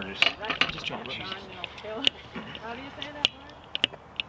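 Indistinct voices talking in the first second or so, then several sharp clicks and taps spread through the rest.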